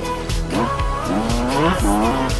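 Yamaha YZ125 two-stroke motocross engine revving, its pitch sweeping up in the second half, under music with a steady beat.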